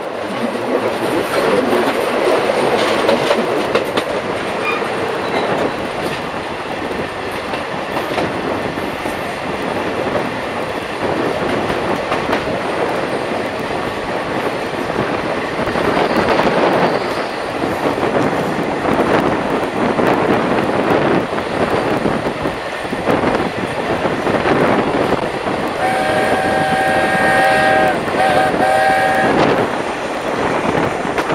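Steam-hauled passenger train running, its wheels clattering over the rail joints. Near the end the 4-8-2 steam locomotive's whistle sounds, a long blast followed by a short one.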